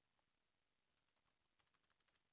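Very faint computer keyboard typing in near silence: a few scattered keystrokes, then a quick run of them near the end.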